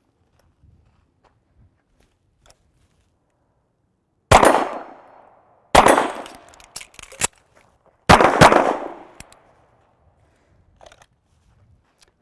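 A SIG Sauer pistol firing a slide lock reload drill outdoors: two deliberate shots about a second and a half apart, a few sharp metallic clicks as the empty magazine is swapped and the slide is released, then two quick shots fired in fast succession.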